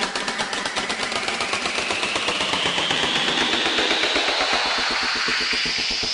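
Electronic filtered noise sweep transition effect: a spacey noise band rising slowly in pitch, chopped into a rapid, even stutter.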